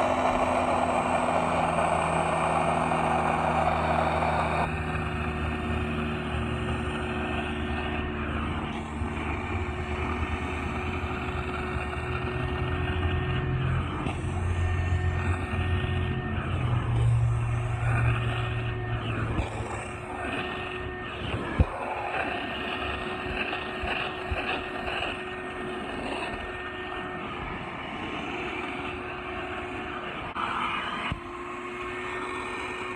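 Shop vac motor running steadily on a homemade upholstery extractor. For the first four seconds or so, the clear upholstery tool sucks air and water from the couch fabric with a loud hiss, and after that only the motor's hum remains. One sharp click comes about two-thirds of the way through.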